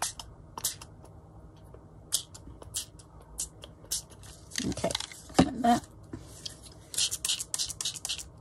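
Small pump-spray bottles of Tim Holtz Distress spray misting ink onto paper: short hissing squirts, several separate ones, then a quicker run of squirts near the end. A couple of knocks from bottles being handled come about halfway through.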